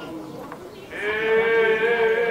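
Traditional island folk music on a reedy, nasal-sounding instrument: the melody dips briefly, then a long held note starts about a second in.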